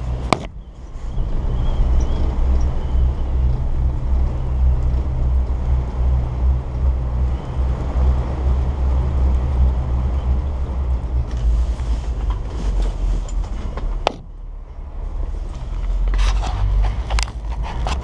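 Steady low rumble of wind and the moving chair heard from inside the closed bubble of a Doppelmayr detachable chairlift. Near the end come sharp clicks and clatter as the chair passes a lift tower and runs over its sheave rollers.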